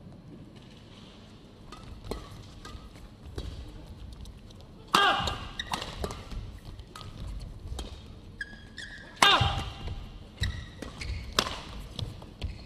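Badminton rackets striking a shuttlecock back and forth in a fast doubles rally: a string of short, sharp hits.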